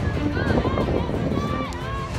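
Music with held notes, mixed with short calls and shouts from voices.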